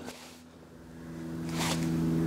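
Quiet background music fading in, holding a steady low note that swells in level. About one and a half seconds in there is a brief scratch of a marker pen tip on glossy photo paper.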